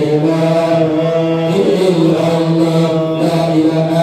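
Men chanting an Islamic prayer through microphones and a PA system, in long held notes that step to a new pitch every second or two.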